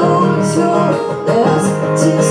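Live acoustic pop performance: a woman singing a melody over strummed acoustic guitars.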